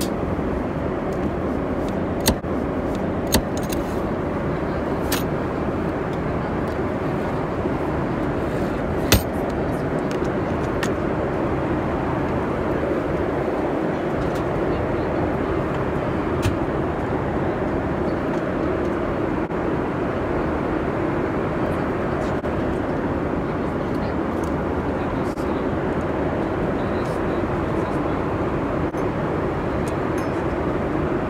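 Steady roar of a Boeing 747-8 airliner cabin, with a few sharp clicks and knocks from a business-class tray table being released and pulled out. The loudest knock comes about nine seconds in.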